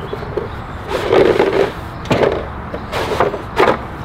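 A post-protector sleeve being pushed along a cedar post, scraping and knocking in about four short strokes.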